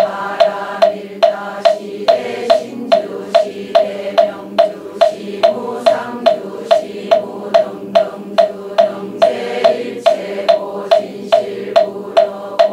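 A moktak (Buddhist wooden fish) struck at a steady beat, about two and a half strikes a second, each strike a sharp hollow knock. It keeps time for a congregation chanting in unison.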